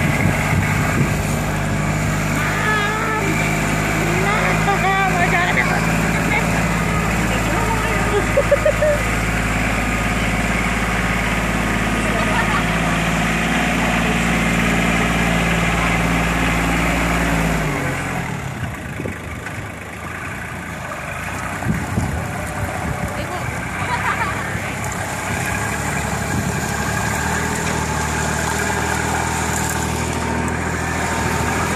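Kubota tractor's diesel engine running steadily at low revs while the front loader holds people aloft, with children's voices over it. About eighteen seconds in the steady engine hum cuts away and a quieter, lighter hum with voices follows.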